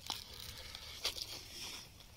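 Faint rustling and scratching of fingers picking at frayed Kevlar fibres around bullet holes in a ceramic armour plate's fabric cover, with a couple of light clicks.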